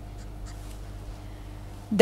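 Pen writing on paper, faint scratching strokes, over a steady low electrical hum.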